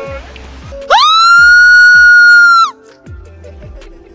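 A bungee jumper's long, high scream on leaving the platform. It starts about a second in, holds one pitch for under two seconds and cuts off, over background music with a steady beat.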